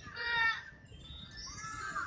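A high-pitched voice sounds twice briefly, the second time rising in pitch, over the low running rumble inside a high-speed train carriage.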